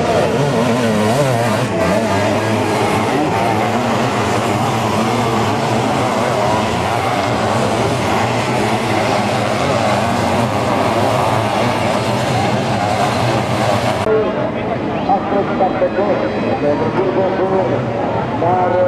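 Sidecar motocross outfits' engines racing, several machines revving up and down over one another as they climb and jump the track. About fourteen seconds in the sound turns duller and more uneven.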